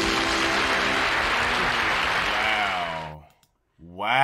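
A live audience applauding as the last note of a song fades out at the start. The applause stops abruptly about three seconds in.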